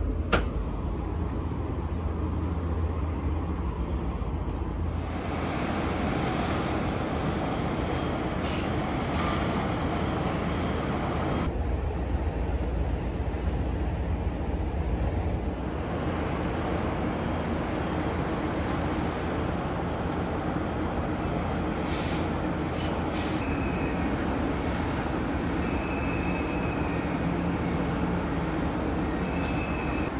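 Steady outdoor background rumble and hiss with no distinct event; its colour shifts slightly a few times.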